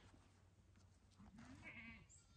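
A goat bleating faintly once, starting a little over a second in: a short call that rises in pitch and then holds.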